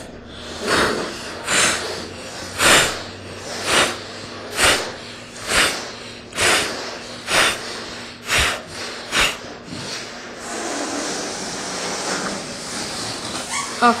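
A person blowing up a balloon in short, rhythmic breaths, about one a second, as a pumped breath-control exercise. For the last few seconds the breath gives way to a steady hiss of air.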